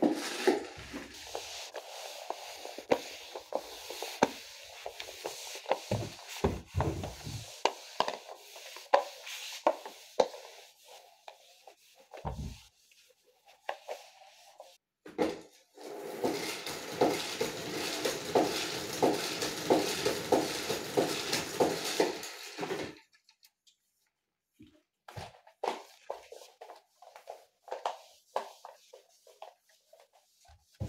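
Spin mop and plastic bucket being handled: clatter and knocks of the mop against the bucket, then a dense stretch of about seven seconds with rapid clicking while the mop is worked in the bucket, and scattered scrapes and knocks of mop strokes on the tiled floor near the end.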